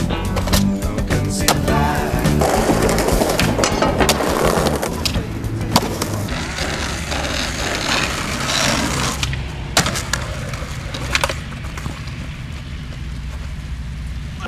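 Skateboard wheels rolling on concrete, with several sharp clacks of the board hitting the ground, over background music with a steady bass line.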